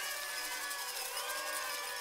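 Intro sound track under an animated title card: a steady mix of held tones and gliding, whistle-like pitches over a high hiss.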